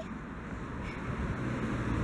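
Road traffic noise outdoors: a motor vehicle approaching, its low engine and tyre rumble growing steadily louder, with a low hum coming in about halfway through.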